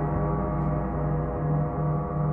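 A large gong played continuously with two soft mallets: a sustained, even wash of many ringing overtones, with a low hum that swells and fades about twice a second.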